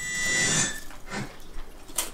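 Film sound effects from a movie preview playing on a television, heard through the room: a noisy rush that fades out within the first second, then a faint brief swish.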